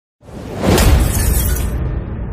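Cinematic sound effect opening a music track: a sudden burst of noise with a deep hit that peaks just under a second in. Its hiss cuts off near the end, leaving a low rumble.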